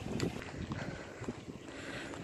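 Wind noise on a handheld phone's microphone during a walk: a low, uneven buffeting.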